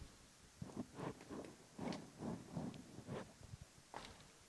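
Faint, indistinct murmured voices in short broken phrases.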